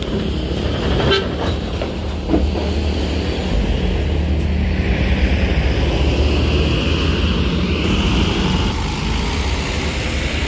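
Diesel coach bus driving slowly past at close range, its engine drone swelling as it draws alongside about halfway through, with tyre and engine hiss. A couple of short horn toots sound near the start.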